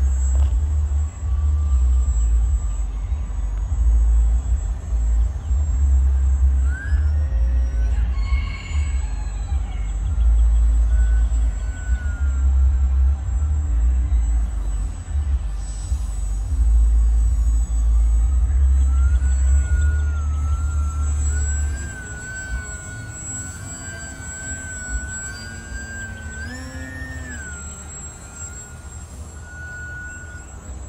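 Motor of a radio-controlled Fokker Dr.I triplane model in flight, a thin whine that rises and falls in pitch as the plane is throttled and passes by. A heavy low rumble runs under it and drops away abruptly about two-thirds of the way through.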